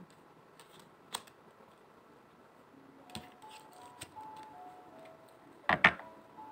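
A deck of tarot cards being shuffled by hand, with a few scattered soft card clicks and a louder clatter of cards near the end. Faint background music with a slow melody of held notes comes in about halfway through.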